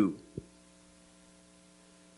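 Faint steady electrical mains hum from the microphone and sound system in a pause between words, with one short soft thump about half a second in.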